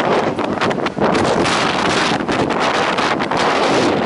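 Wind buffeting the microphone: a loud, steady rush of noise.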